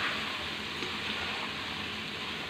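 Pieces of wild duck sizzling in ghee in a non-stick wok as they are stirred with ground spices, a steady frying hiss.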